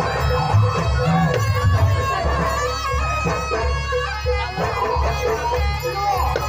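Live jaranan ensemble music: a shrill, reedy slompret (shawm) melody with held, wavering notes over drums and gongs.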